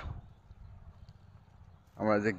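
Faint, soft steps of bare feet wading through shallow, muddy pond water, over a low rumble.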